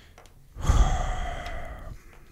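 A man's long, heavy sigh right into the microphone, starting about half a second in and fading over about a second and a half, with a breathy rumble from the breath hitting the mic.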